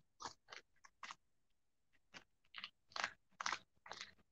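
Faint, short crunchy tearing and scratching sounds, about ten in an irregular run with a pause partway, as embroidery stabilizer is picked and torn away from stitching on minky plush fabric.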